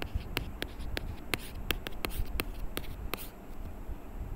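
A plastic stylus writing on a tablet, making quick clicking taps and light scratches as it forms handwritten symbols. There are about four clicks a second, and they stop shortly before the end.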